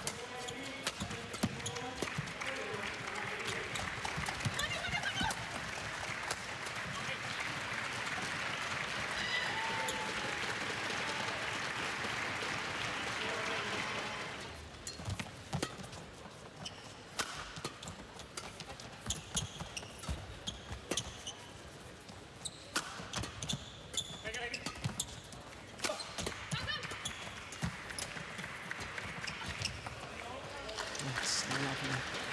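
Crowd of spectators in a large hall cheering and chattering for about the first half. The noise then drops away to sparse crowd sound as a badminton rally is played, with the sharp, separate cracks of rackets striking the shuttlecock.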